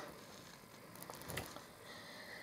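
Quiet room tone with a few faint short clicks and a soft low bump about a second and a half in.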